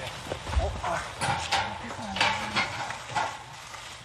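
Press camera shutters clicking in several quick bursts, with low voices in the background.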